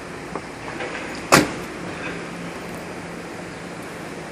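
A car door of a Dodge SRT-4 slammed shut once, a single sharp thump about a second in, over a low steady hum.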